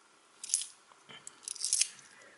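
20p coins clinking against each other in the hand as they are picked over: one sharp chink about half a second in, then a quick run of chinks near the end.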